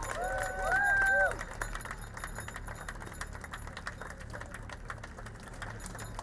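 A loud held cheering shout for about the first second, then a quick scatter of sharp clicks, the shutters of press cameras, over a steady low hum.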